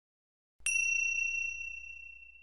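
A single high chime struck once about half a second in, its bright tone ringing and slowly fading over a couple of seconds, with a faint low hum beneath it.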